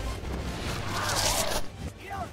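Film soundtrack played backwards: a dense mix of reversed sound effects over a low rumble. A hissing swell builds about a second in and stops abruptly near the end.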